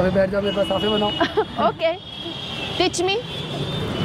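People talking, with street noise in the background.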